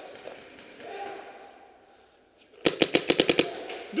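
Paintball marker firing a rapid burst of about eight sharp shots in under a second, near the end.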